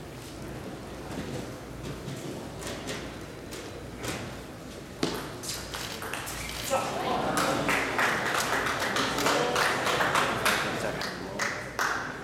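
Table tennis rally: the ball clicks back and forth off the bats and the table at a quick, even pace. About halfway in, spectators' voices rise and carry on over the later strokes.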